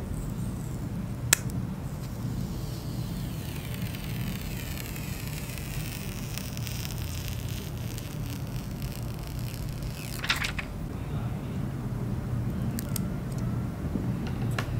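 Clear plastic protective film being peeled off a new smartphone: a sharp click about a second in, then a long hissing, crackling peel lasting several seconds, ending with a short crackle as the film comes free.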